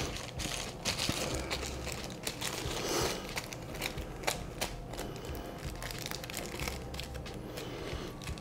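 Small plastic packets of wax dye chips crinkling and crackling irregularly as they are handled.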